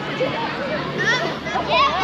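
Many children's voices shouting and chattering over one another, with high calls rising and falling about a second in and again near the end.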